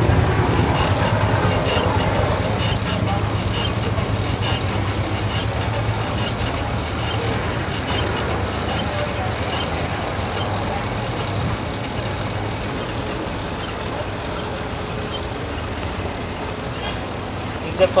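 Pedal-and-electric pedicab rolling along a street: steady road and wind noise with a low hum underneath. Midway a faint high tick repeats about two to three times a second for several seconds.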